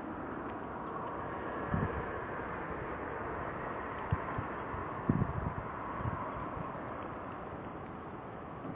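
Wind on the microphone over a steady outdoor rumble, with a few short low gusts buffeting the mic about two, four and five seconds in.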